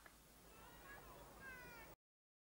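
Near silence: faint background noise with a few faint, high, falling whistle-like calls in the second half, cut off abruptly just before the end.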